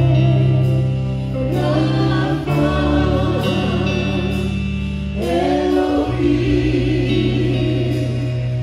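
Live gospel worship song: voices singing over slow, held chords, with an electric guitar played through an amplifier.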